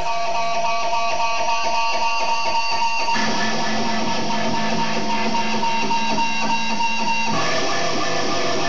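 A live band playing loudly with sustained, ringing chords that change about three seconds in and again near the end.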